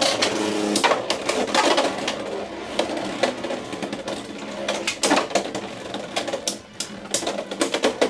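Two Beyblade X spinning tops battling in a plastic stadium: a rapid, irregular clatter of clicks and rattles as they strike each other and the stadium's toothed rail.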